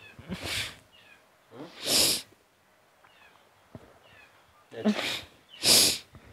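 A woman crying: sobbing with three sharp, noisy breaths, about half a second in, at two seconds, and near the end, with a short moan just before the last one.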